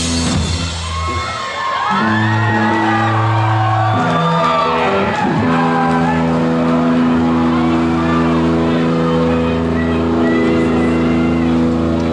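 Live rock band holding long, sustained chords on electric guitar and bass, changing chord a few times in the first half, with sliding, bending guitar notes on top. Shouts from the crowd come through.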